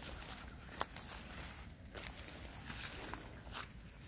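Footsteps of several people walking over wet mud and dry grass, with scattered soft crunches and one sharp click a little under a second in.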